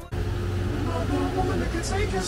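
Low, steady rumble of road traffic with indistinct voices over it.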